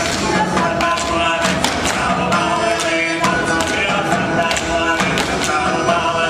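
Background music: a tune of sustained notes over a percussive beat.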